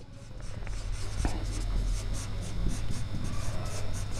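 Marker pen writing on a whiteboard: a quick run of short strokes as two words are written, over a steady low hum.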